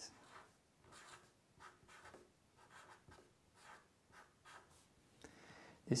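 Felt-tip marker writing a word in capital letters: a string of short, faint scratchy strokes, one after another.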